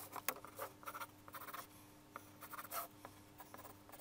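Pencil sketching on paper: short, quick scratching strokes coming in uneven runs, several a second.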